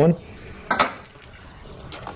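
A single sharp metallic clink of a hand tool knocking against metal, with a brief ring.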